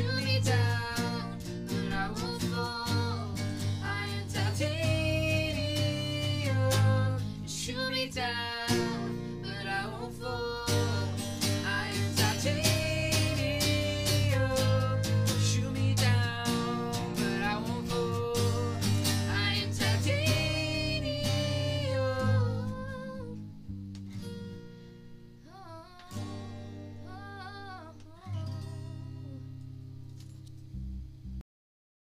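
Acoustic cover of a pop song: a woman singing with vibrato over a strummed acoustic guitar. About three quarters of the way through it drops to a quieter, sparser passage with a few soft sung notes, as the song winds down.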